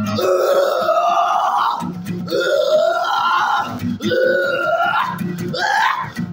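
A man singing long wordless vowel cries, about four of them, each drawn out for a second or two with its pitch sliding, while he strums an acoustic guitar between them.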